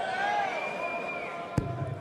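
A steel-tip dart hits the bristle dartboard with one sharp thud about one and a half seconds in, landing in treble 18. Under it is a steady murmur from the arena crowd.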